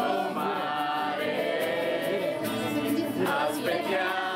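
A group of people singing a song together in Italian, several voices at once, with music.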